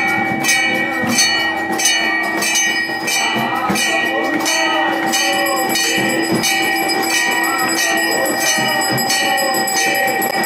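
Temple bell rung steadily during aarti, struck about twice a second so that its ringing tones hold on continuously. Crowd voices are heard under it.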